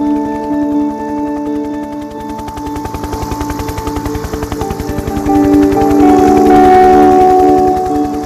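A military helicopter's main rotor beating rapidly and evenly, with sustained held musical tones over it that shift partway through and swell louder in the second half.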